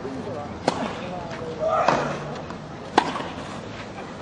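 Tennis rally: a ball struck by rackets three times, sharp hits about a second apart. A voice is heard with the second hit.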